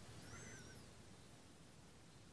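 Near silence: faint room tone, with one brief, faint high chirp in the first second.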